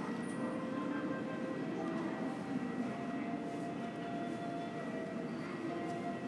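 Steady room hum of a large airport terminal hall, with faint held tones of background music.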